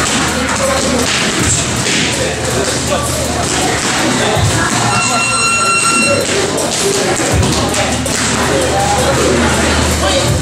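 Boxing gloves hitting focus mitts in scattered thuds over music with a steady bass. A single high electronic tone sounds for about a second just past the middle.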